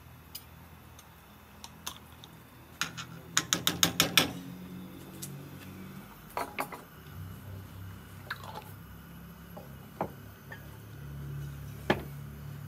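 Kitchen utensils knocking and clinking against a steel wok and a jar as curry paste is spooned in and the sauce is stirred with a wooden spoon. There is a quick run of about seven taps about three to four seconds in, with scattered single clicks before and after.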